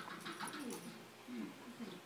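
Brittany spaniel whining softly: several short whimpers that slide up and down in pitch.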